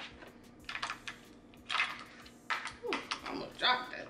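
Batteries being pressed into a small plastic battery compartment by hand: a scattered series of sharp plastic clicks and taps as the cells seat and the gadget is handled.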